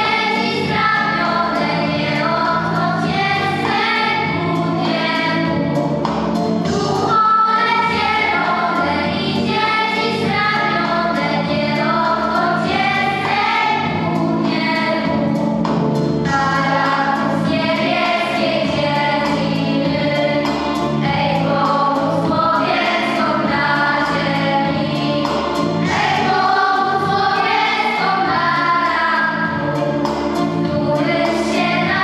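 A choir singing a song over steady instrumental accompaniment.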